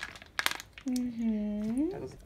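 Mayonnaise squeezed from a plastic pouch: a few short crackles of the pouch about half a second in, then a drawn-out note of about a second that dips and then rises in pitch.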